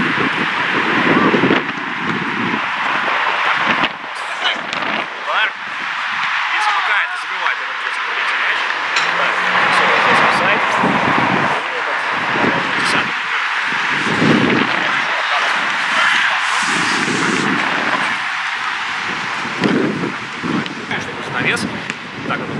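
Players' indistinct shouts on a football pitch, coming every second or two over a steady rushing outdoor background noise.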